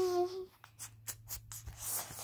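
Handling noise: a quick run of short rustles and rubs as the picture book and the phone are moved about, the phone brushing against clothing.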